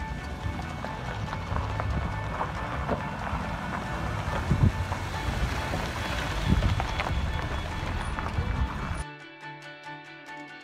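Background music laid over outdoor field noise: a low rumble with scattered knocks and bumps. About nine seconds in the field noise cuts off suddenly, leaving only the music.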